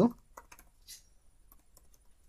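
Typing on a computer keyboard: a run of separate keystrokes at an uneven pace, about half a dozen over two seconds.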